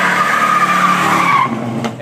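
Plymouth Superbird doing a burnout: its rear tyres spin and squeal on pavement over the running V8 engine. The squeal dies away about a second and a half in, and the sound cuts off just before the end.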